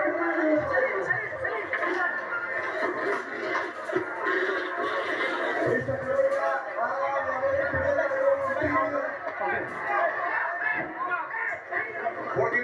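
Television audio picked up from the set's speaker: voices talking over background music, muffled and thin.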